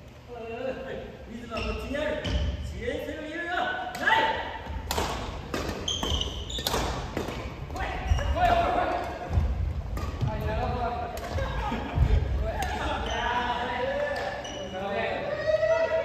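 Badminton doubles rally in a large gym hall: sharp racket strikes on the shuttlecock and players' footsteps thudding on the wooden floor, with players' voices calling out throughout.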